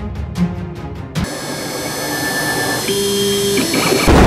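Background music with a beat, cut off about a second in by the steady high whine of a CNC router's spindle cutting. A lower hum joins it for under a second near the end. The machine is cutting at a faster feed rate and is described as 'ripping right along'.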